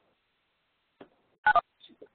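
Faint click about a second in, then two quick, loud electronic beeps, each made of two pitches at once like telephone keypad tones.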